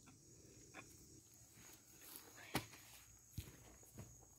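Near silence, broken by three short, faint clicks or taps, the loudest about two and a half seconds in.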